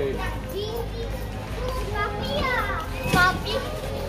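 Children's voices and general chatter, with some high-pitched rising child calls in the second half.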